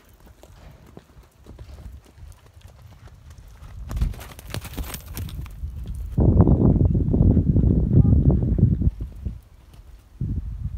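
Hoofbeats of a Tennessee Walking Horse being ridden at the canter, quiet at first and much louder from about six seconds in, with a short hiss about four seconds in.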